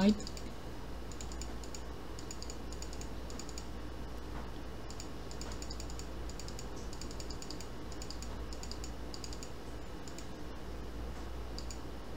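Computer keyboard typing in short bursts of a few keystrokes at a time, over a low steady hum.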